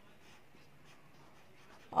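Faint scratching of a pen writing on a workbook page.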